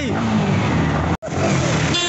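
A motorcycle engine running steadily, heard inside an underground car park, with the sound cutting out completely for an instant just over a second in.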